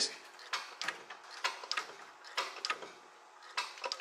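Irregular light mechanical clicks and ticks, about two or three a second, as a hydraulic disc brake is worked and the caliper squeezes on the brake disc, with the lines freshly bled.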